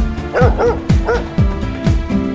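Background music with a steady beat of about two drum hits a second, and a dog yipping three or four times over it.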